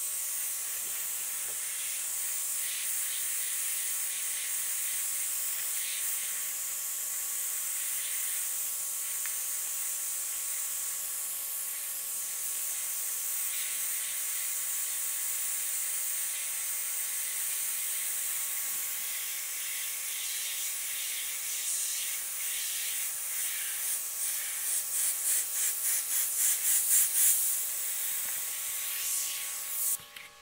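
Iwata HP-CS Eclipse airbrush spraying: a steady air hiss, which swells and pulses in quick surges over the last several seconds and then stops. The paint is going on heavy and wet, close to the surface, so the air is pushing it around.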